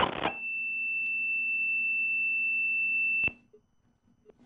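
A steady, high-pitched electronic tone on a telephone line, one unchanging pitch held for about three seconds, then cut off with a click.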